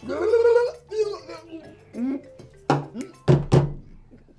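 Wordless vocal reactions to a tequila shot: a drawn-out groan at the start, then shorter grunts, with a few sharp knocks in the last second and a half.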